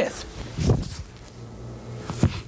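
A few separate footsteps on a studio floor, over a low steady hum.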